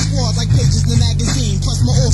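Hip hop track: a steady, heavy bass beat with a rapping voice over it.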